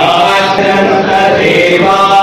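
Group of male monks chanting a hymn together, singing long, held notes.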